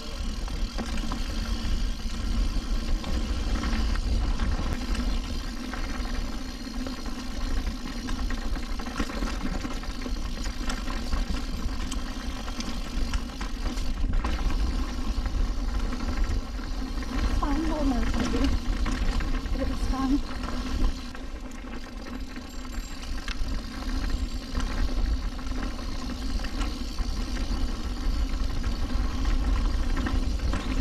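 Mountain bike riding down a rough downhill trail: a steady low rumble of wind and tyres on the camera, with a continuous hum and rattle of the bike throughout.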